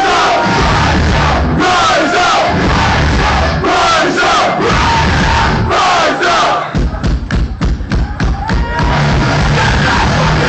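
Hardcore punk band playing live with shouted vocals and the crowd yelling along, loud and distorted. Near the end the full sound drops to a quick run of sharp hits, about six a second, before the band comes back in full.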